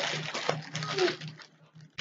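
A dog giving a short whine about a second in, over the crinkle of plastic packaging being handled; both stop about a second and a half in.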